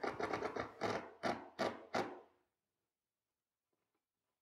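Cordless drill/driver driving a screw into wood in a series of short trigger bursts, the last few a little under half a second apart, stopping about two and a half seconds in.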